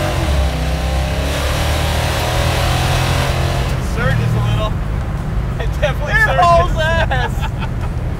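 Plymouth Barracuda's 360 V8 running at a steady road cruise, heard from inside the open-windowed cabin with wind rushing in. Two men laugh over it in the second half.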